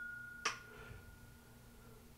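A tulip-shaped whisky nosing glass ringing after a flick of the finger: one clear, high tone that slowly fades away. A short click about half a second in.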